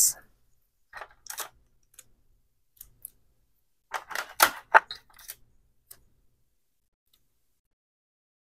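Heat-resistant tape being pulled from a desktop tape dispenser and torn off, heard as a cluster of short noises about four seconds in, with lighter tape and paper handling sounds around a second in.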